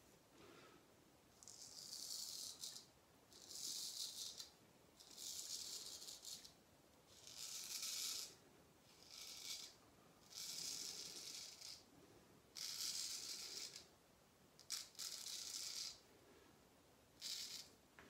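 Wade & Butcher 5/8 full hollow straight razor scraping through lathered stubble on the cheek and jaw. It makes about nine strokes, each lasting around a second, with short pauses between.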